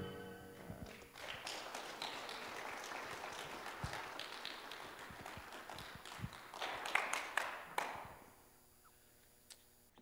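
A small congregation clapping after a song, starting about a second in as the last sung note fades, with a few louder claps near the end before it dies away.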